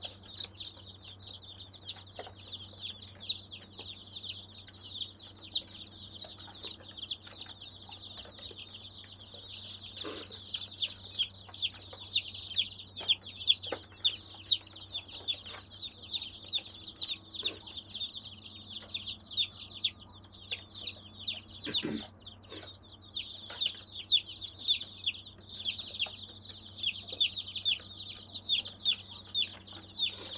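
A box of baby chicks peeping continuously, many rapid high cheeps that slide downward and overlap. A low steady hum runs underneath, with a few soft knocks.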